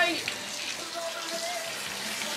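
Water running from a hose over a wet tile saw, a steady splashing hiss.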